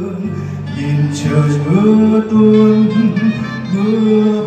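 A slow ballad played live on acoustic guitar and saxophone, with a man singing long held notes.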